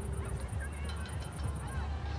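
Distant geese honking in short, scattered calls over a steady low rumble.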